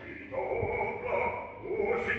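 Live opera recording: a baritone singing recitative with the orchestra accompanying, held sung notes over sustained orchestral tones.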